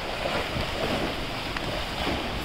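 Indoor swimming pool noise: a steady wash of water and echoing hall sound while a swimmer works up the lane.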